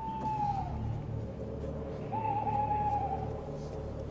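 An owl hooting twice over a low steady background: a short call that falls slightly, then a longer, slowly falling call about two seconds in.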